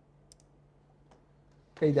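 A couple of faint computer-mouse clicks over a low steady hum, then a man starts speaking near the end.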